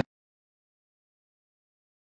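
Dead silence: the soundtrack cuts off abruptly at the very start and nothing is heard after.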